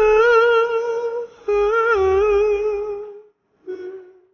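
A man singing two long held notes with vibrato, the second a little lower and fading out about three seconds in, then a brief note near the end; no backing is heard.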